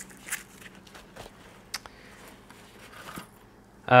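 Quiet handling noises: a few faint clicks and a soft rustle as a Leatherman multi-tool in its pouch is put away and a bundle of thin cord is picked up.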